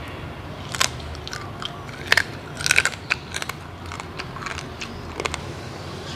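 Close-up biting and chewing of crunchy food, blue crab in a spicy papaya salad, with a handful of sharp crunches at irregular intervals, several close together in the middle.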